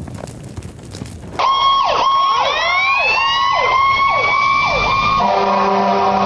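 The noise of an explosion dies away. About a second and a half in, several emergency-vehicle sirens start at once, their wails sweeping up and down over one another above a steady high tone. Music comes in under them near the end.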